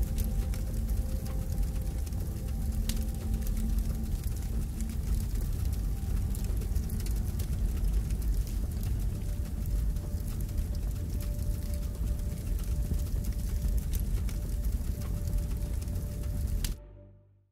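Dark ambient outro soundtrack: a deep, steady rumbling drone with many scattered crackles over it and a few faint held tones that shift about nine seconds in.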